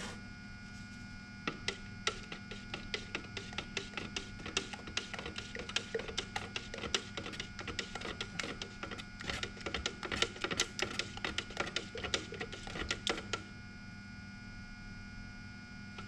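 Thick, unthinned paint being stirred in a metal gallon can with a thin stick, the stick clicking and knocking rapidly and irregularly against the can's walls from about a second and a half in until shortly before the end. A steady electrical hum runs underneath.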